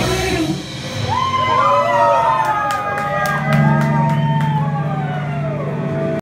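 A live punk rock band breaks off its full-band playing about half a second in. Overlapping sliding, wailing high tones follow, rising and falling, over a steady low note from the amplifiers, with a few sharp hits.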